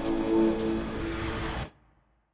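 Station logo sting: a sustained chord over a low rumble, with a thin steady high whine above it, which cuts off sharply just before the end.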